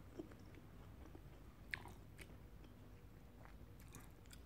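Faint chewing of a mouthful of instant stir-fried noodles, a few soft mouth clicks against near silence.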